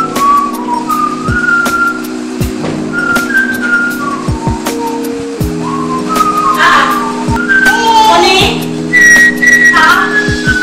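Background music: a whistle-like lead melody of held, sliding notes over sustained chords, with sharp drum hits.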